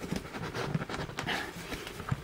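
Light irregular clicks and scraping from the plastic and metal housing of an exit sign being handled and worked at, as someone tries to open a case that stays shut even with its screws removed.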